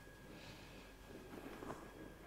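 Faint breathing through the nose: a soft puff about half a second in and another weaker one later, over quiet room tone with a faint steady high hum.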